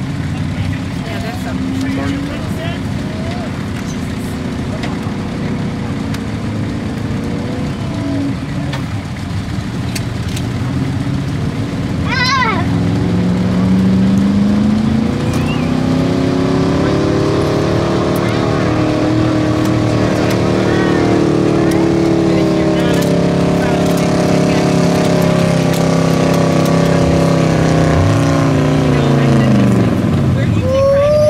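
1978 Chevrolet pickup's engine pulling a weight-transfer sled under load. It runs steadily at first, then about halfway through the revs climb and hold high for most of the pull, and fall away near the end as the throttle comes off.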